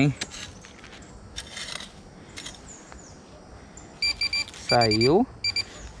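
Minelab Pro-Find 35 pinpointer beeping in three quick bursts of short, rapid beeps about four seconds in, as it finds metal in the dug soil. Before that come a couple of scrapes of a hand hoe digging into soil and leaf litter.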